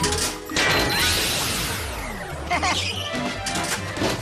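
Cartoon sound effects over background music: a sudden crash-like hit about half a second in, then a long wash of falling, sweeping tones.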